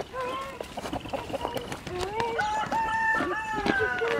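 Chickens give short clucks, then a rooster crows once from about two seconds in: one long call that falls away at the end.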